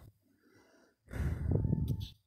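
A short breathy sound, like an exhale close to the microphone, lasting about a second and starting about a second in, after near silence.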